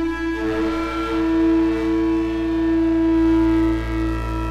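Ambient drone from Soma synthesizers (Lyra-8, with Pipe and the Cosmos): a loud, steady held tone over a low hum, with a second, higher tone joining about half a second in.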